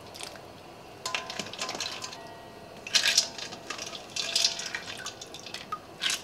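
A slotted spoon scoops potato slices out of ice water in a stainless steel bowl, and water splashes and drips back off it in a few short bursts.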